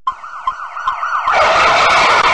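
A siren sound effect: a fast up-and-down yelp, about four swings a second, that grows much louder partway through.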